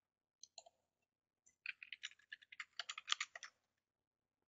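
Computer keyboard keys being typed: a fast run of about a dozen keystrokes as a password is entered. Two short clicks come first, about half a second in.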